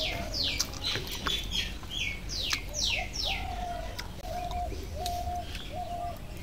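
Birds calling: a quick run of high whistled notes, each falling in pitch, then a series of shorter, lower notes held on one pitch about every 0.7 seconds, with a few faint clicks.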